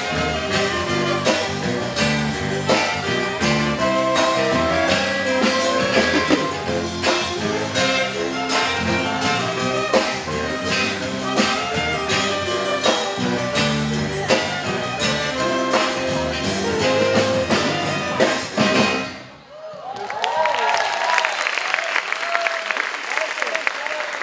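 Saxophone quartet of soprano, alto, tenor and baritone saxophones, backed by guitar, bass, drums and percussion, playing a tune that stops cleanly about 19 seconds in. The audience's applause follows to the end.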